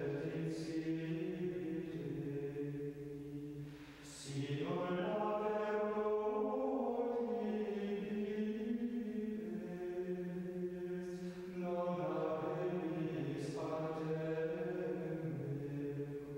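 Slow sung chant as background music: voices holding long, sustained notes, with a short break about four seconds in and a new phrase entering near twelve seconds.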